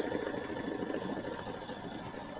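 Computerized embroidery machine stitching at speed, a steady, rapid needle chatter, as it sews the tack-down stitch that fastens a raw-edge appliqué piece of embroidery leather to the hooped fabric.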